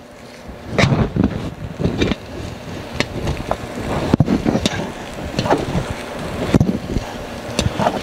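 Sausage stuffer at work, pushing breakfast sausage meat through the horn into casing: an uneven rumbling noise with a few sharp clicks.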